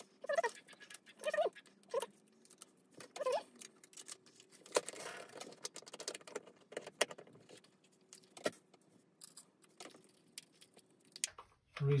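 Gloved hands handling small plastic lamp parts and a screwdriver: scattered light clicks and taps, with a few short squeaks in the first few seconds.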